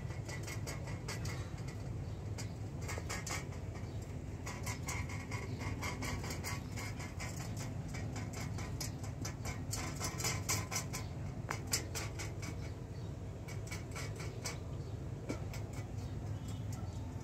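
Cat lapping milk from a stainless steel bowl: quick, wet, irregular clicks of the tongue in the milk.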